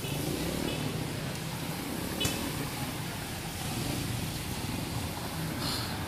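Street traffic on a waterlogged road: a steady low hum of vehicle engines, with a short high beep about two seconds in.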